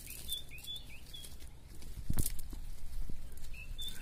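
Rustle and light clicks of a nylon cast net and dry leaves being handled as fish are picked out, with one louder thump about halfway through. A small bird chirps several times in quick short notes near the start and again near the end.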